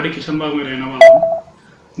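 A man speaking, cut about a second in by a click and a single short electronic beep lasting under half a second, the loudest sound here.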